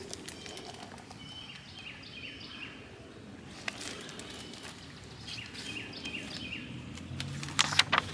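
Small birds chirping in short repeated calls over a steady wash of flowing creek water, with a sharp rustle of paper near the end as a large picture book's page is turned.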